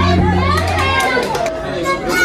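A mariachi band holds a low note that stops about a second in, leaving a lively mix of voices, children's among them, in the break in the music.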